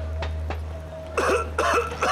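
A man coughing, a run of short coughs one after another that starts about a second in.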